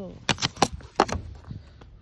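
Snow being swept off a car's windscreen in quick strokes: a run of about half a dozen sharp scrapes and knocks on the glass in the first second and a half.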